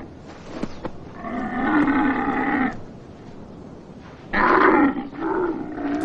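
Two long, loud wordless cries from a man's voice, each a second or more, one about a second in and the other near the end.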